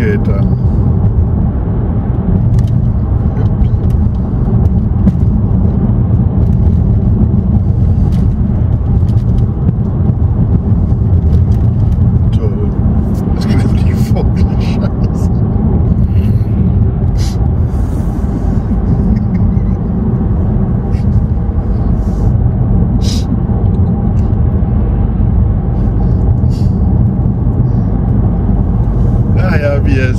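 Steady low rumble of a car's engine and tyres on the road, heard from inside the cabin while driving along at an even pace.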